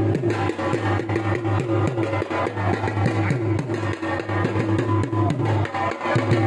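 Dhol drumming in a fast, steady rhythm of even strokes, with a low, ringing drum tone under it.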